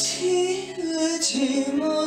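A man singing a Korean trot song into a handheld microphone, drawing out long notes that bend and slide in pitch, over instrumental backing.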